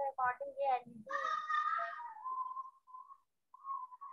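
Short bits of speech over an online video call, followed by a thin, wavering tone in the last couple of seconds.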